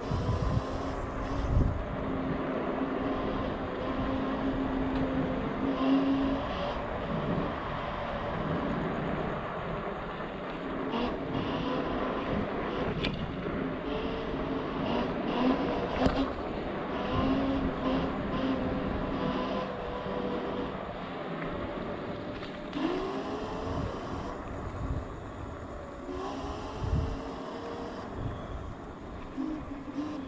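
Zero 11X dual-motor electric scooter under way: a steady hub-motor whine that glides up and down in pitch as speed changes, over wind and tyre noise on the road. A few thumps come from bumps in the road.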